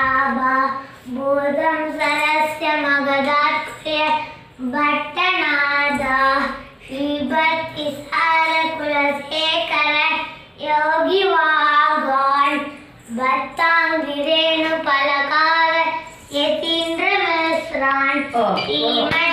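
A child's voice singing a devotional chant, a string of melodic phrases a few seconds long with short breaths between.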